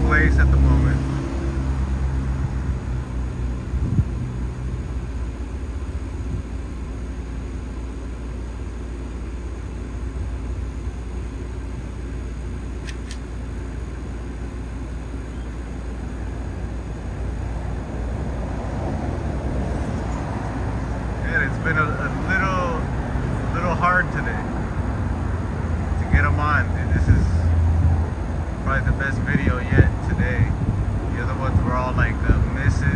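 Steady low rumble of vehicle noise, with a deeper engine-like hum that fades out about five seconds in. Faint, unintelligible voices come in over the last ten seconds.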